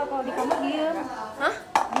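Young women's voices talking in a room, with one sharp clink or knock near the end.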